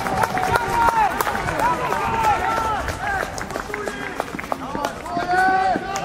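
Football players and spectators shouting and cheering just after a goal, several voices overlapping in short shouts.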